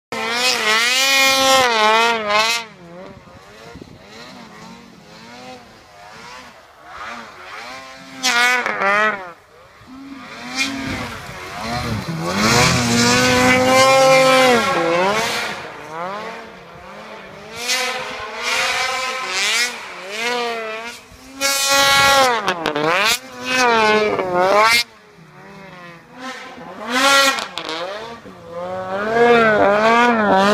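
Ski-Doo snowmobile engine revving hard in deep powder, its pitch rising and falling again and again as the throttle is worked. It grows loud in spells as the sled comes close and drops back between them.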